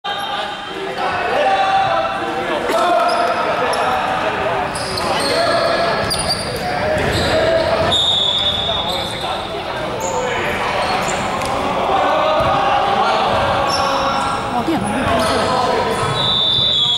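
Indistinct voices echoing in a large gymnasium, with a basketball bouncing and short sneaker squeaks on the hardwood court. A steady high tone sounds for about a second around eight seconds in.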